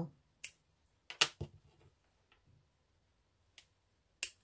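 Small embroidery scissors snipping the thread ends of a tassel: a few short, sharp snips, two of them close together about a second in, and a faint one near the end.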